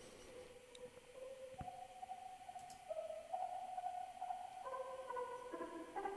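Quiet intro of a rap battle beat: sustained synthesizer notes held one after another at stepping pitches, slowly growing louder, with a soft click about a second and a half in.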